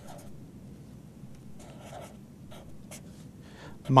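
Felt-tip Sharpie marker writing on paper: a few faint, short strokes, mostly in the middle stretch.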